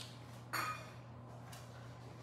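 A wooden abacus bead clacking once against its neighbours as it is pushed along its rod, about half a second in, with a low steady hum underneath.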